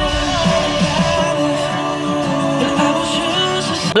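A Christian rock song with a singer and guitar playing over the car's Fender premium sound system, with plenty of bass.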